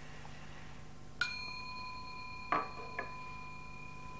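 A metal bell struck once about a second in, ringing on with a clear, sustained high tone. Two short duller knocks follow about two and a half and three seconds in, while the ring carries on. A steady low hum sits underneath.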